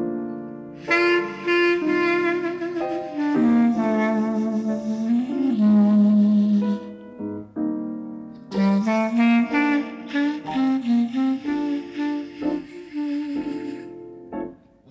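Jazz clarinet playing a slow ballad melody over piano accompaniment, in phrases of held and bending notes with a brief lull about halfway through.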